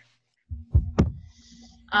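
Two loud, dull low thumps about a quarter second apart, the second with a sharp click on top, over a low steady hum that starts about half a second in.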